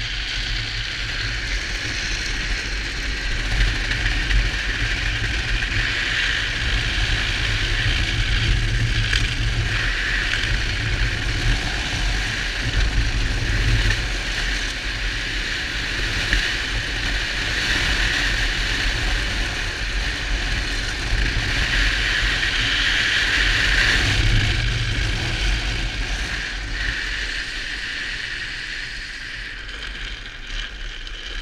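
Drift trike rolling downhill on asphalt, its hard plastic rear-wheel sleeves sliding and hissing over the road surface, with wind rumbling on the microphone. The noise swells and eases in waves and fades near the end.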